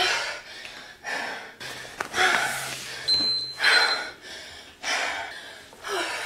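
A woman breathing hard during a fast bodyweight exercise set, a forceful breath about once a second. A single thud comes about two seconds in.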